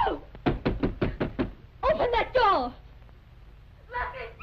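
A quick run of about six sharp knocks, as on a door, followed about half a second later by a brief vocal sound. The sound comes from an old film soundtrack.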